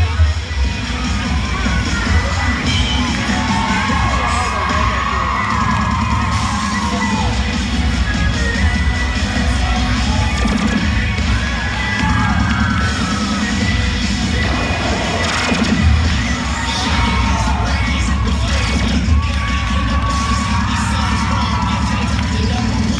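Cheerleading routine music played loud through an arena sound system, with a steady bass beat, mixed with a crowd cheering and shouting.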